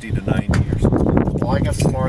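People talking: indistinct conversational voices, with a low rumble underneath.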